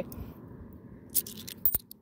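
Australian 50-cent coins (cupronickel) scraping and clicking against each other as they are handled from a roll, with a few sharp clinks in the second half.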